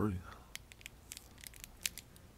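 Silver wrapper of a 3 Musketeers candy bar being torn open by hand, a run of sharp crackles with the loudest crackle near the end.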